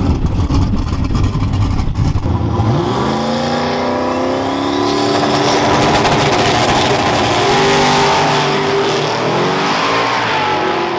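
Turbocharged 5.3-litre LC9 V8 of a drag-racing AMX Javelin. It starts with a loud, uneven low rumble, then about three seconds in the engine revs up hard and holds high revs under full acceleration down the strip, with a thin rising whistle over it a little later. The pitch dips briefly near the end.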